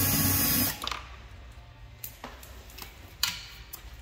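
Milwaukee cordless drill-driver running in reverse, backing a T25 Torx screw out of a car door trim panel, stopping under a second in. A few light clicks follow later.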